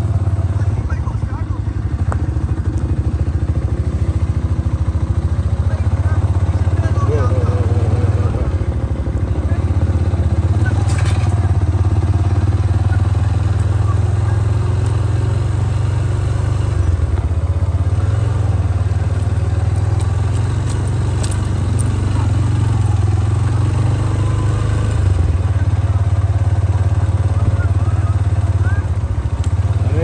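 Motorcycle engine running steadily at low speed, heard from on the bike as it rides along a rough dirt track, with a couple of sharp clicks about eleven and twenty-one seconds in.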